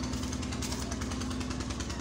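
A small engine or motor running steadily in the background, a low rumble with a fast, even pulse and a faint steady hum.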